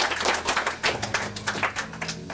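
Small audience applauding, the clapping thinning out and dying away. A low steady hum runs underneath.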